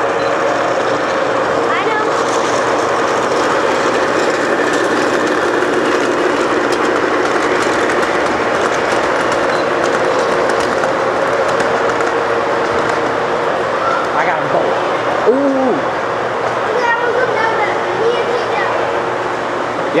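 O scale model passenger train running past close by, a steady rumble of metal wheels on the rails and the locomotive's motor hum that holds evenly throughout.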